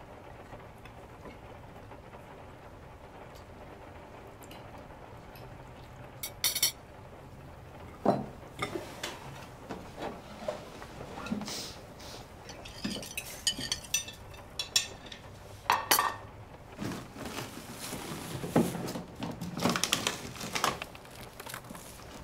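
Cutlery and dishes clinking and knocking at a dinner table, in short irregular strikes, starting about six seconds in after a quiet stretch of room tone.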